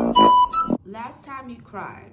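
A meme sound clip: a short melody of quick electronic keyboard notes that cuts off abruptly under a second in, followed by a voice speaking briefly.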